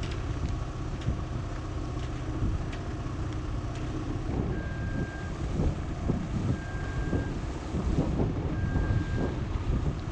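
Wind buffeting the microphone on a sailing yacht's deck. From about four and a half seconds in, an AIS receiver's alarm sounds three short steady beeps about two seconds apart, warning of an approaching ferry.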